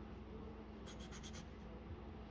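Wooden pencil scratching on drawing paper: a quick run of about four short strokes about a second in, faint over a low steady hum.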